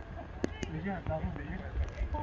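Faint voices and laughter from a small group outdoors, over a steady low rumble of wind on the microphone.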